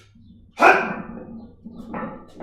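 A single loud, sudden vocal burst about half a second in, fading within about half a second, over a steady low hum.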